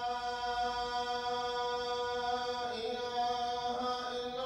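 Chanted vocal music: a voice holding long, steady notes, moving to a new note near the end.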